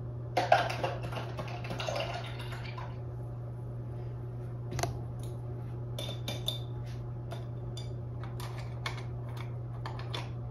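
Paintbrushes clattering and clinking against a container for a couple of seconds, then a few scattered light taps and clicks as brushes are put down and picked up. A steady low hum runs underneath.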